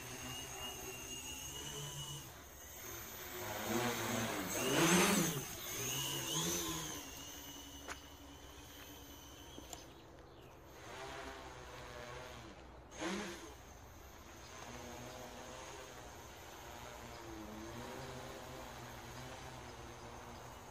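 Quadcopter with Racerstar BR2212 1000KV brushless motors and 10-inch propellers humming in flight. It is loudest about four to seven seconds in, its pitch swinging up and down as the throttle changes, then fainter as the drone flies high, with one brief surge about thirteen seconds in.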